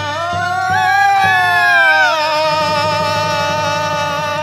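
A woman singing a Cantonese opera aria over instrumental accompaniment, ending on one long held note with a wavering pitch; a few sharp percussion strikes sound in the first second or so.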